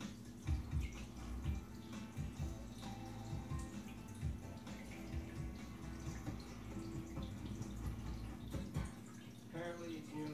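Irregular soft thumps and rustling from a towel being rubbed over a wet kitten, over faint background television sound.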